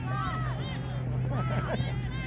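Overlapping voices of children and adults calling out across an open field, several at once and none close to the microphone, over a steady low hum.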